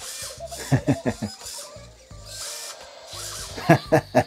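Two Eilik desktop robots playing a group animation: short musical sound effects and chirpy robot sounds from their small speakers, with the whir of their arm motors as they move.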